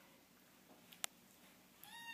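Near silence with a faint click about a second in, then a kitten's meow begins just before the end: one clear call falling slightly in pitch.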